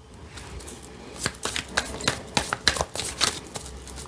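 Tarot cards being handled: a run of irregular card slaps and rustles starting about a second in.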